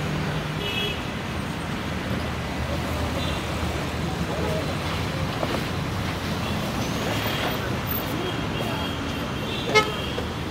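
City road traffic noise with short car horn toots, and a single sharp knock just before the end.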